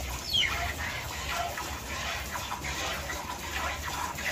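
Milk squirting in streams from a cow's teats into a steel bucket during hand-milking. A bird calls once about a third of a second in, a short note falling steeply in pitch.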